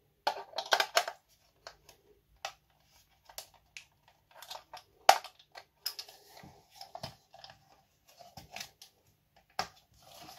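Small screwdriver prying at the snap-together plastic shell of a cheap UV nail dryer, giving irregular plastic clicks, scrapes and creaks, with a dense run of clicks in the first second and a sharp snap about five seconds in. The shell is very hard to open, as if glued.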